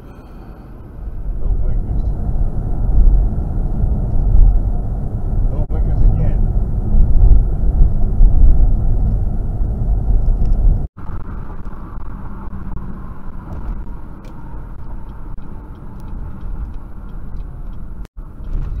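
Road and engine noise inside a moving car, picked up by a dashcam microphone as a steady low rumble. It grows louder about a second in, cuts out abruptly about eleven seconds in, and then continues more quietly.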